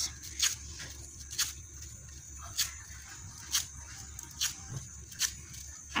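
A fringed paper strip pulled across a scissors blade to curl it, the way gift ribbon is curled: about six short scraping strokes, roughly one a second.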